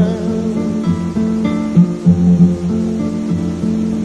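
Acoustic guitar picking a melodic fill over bass notes in a recorded song, an instrumental passage between the sung lines.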